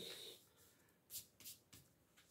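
Near silence, with faint brief rubbing of fingers smoothing paper onto card, twice about a second in.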